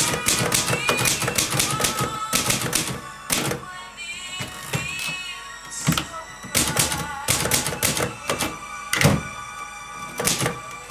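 Manual typewriter typing: quick runs of keystrokes striking the paper in bursts, with the carriage returned between lines. Background music plays underneath.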